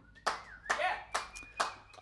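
Two people clapping their hands, about five sharp claps a little under half a second apart.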